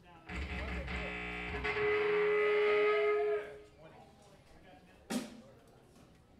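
Electric guitar and bass played through stage amps, a single note held and ringing for about three seconds, swelling before it dies away, as the swapped-in guitar is tried out. About five seconds in, a single sharp click.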